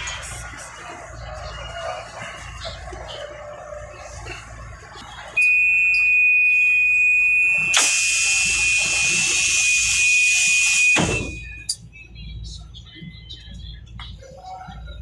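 Light-rail train door warning buzzer sounding one steady high tone for about six seconds. A loud hiss joins it partway through, and both cut off with a thump as the doors close.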